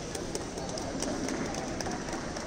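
Steady background noise of a large indoor sports hall, with scattered faint clicks and no words.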